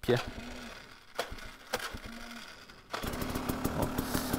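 KTM EXC 300 two-stroke enduro engine being electric-started: two brief starter hums, then about three seconds in the engine fires and settles into a steady, quickly pulsing idle. The starter's Bendix drive has been unreliable but catches this time.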